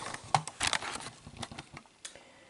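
Rustling of the paper wrapped around leftover slices of sfincione as it is handled, with a few sharp clicks, dying down near the end.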